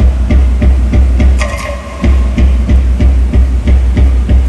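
Loud Polynesian-style drum music for a dance show, a fast steady beat of heavy low drum strokes about three a second, with a brief dip in the middle.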